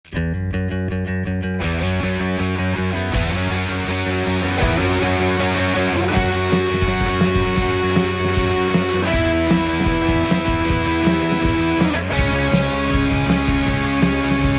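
Instrumental intro of a band's song, before the vocals: electric bass and guitar holding chords that change about every second and a half, the sound growing brighter in steps, with a steady drum beat joining about six seconds in.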